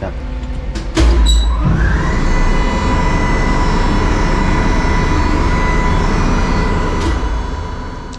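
Ship's cargo crane power unit starting up: a sudden low rumble about a second in, a whine that rises for about a second and then holds steady as the motor runs. The crane starts because its emergency stop has been released.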